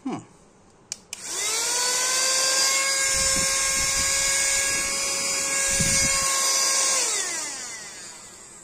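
Small electric motor of a cordless handheld mini vacuum cleaner switched on with a click about a second in, spinning up to a steady high whine with an airy hiss that sounds like a dentist's drill. Two brief low rumbles come in the middle, and the whine winds down with a falling pitch near the end.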